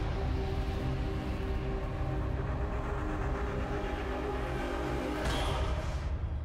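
Logo-intro sound design: a deep rumble under a held, droning chord, with a whoosh about five seconds in as the logo resolves.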